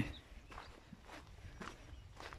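Faint footsteps on a dry dirt track, about two steps a second.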